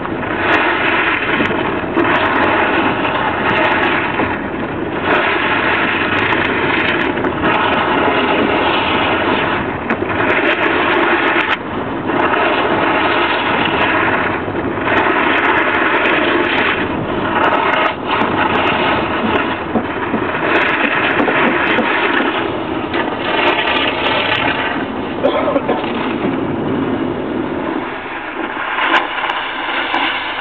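Ford Fiesta driving slowly on an icy, snow-covered road: a steady rushing of tyre, wind and engine noise that swells and eases every second or two.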